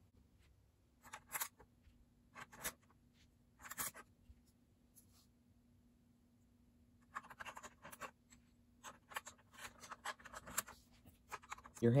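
Small plastic Lego pieces clicking and scraping as olive-oiled smooth cylinder wall pieces are handled and pressed back onto a Lego vacuum engine. A few scattered clicks come in the first four seconds, then a quicker run of small clicks and rubs in the last five seconds.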